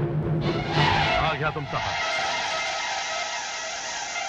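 Dramatic film background score: a sudden whooshing swell about half a second in, with pitches sliding down, then settling into a held high-pitched chord.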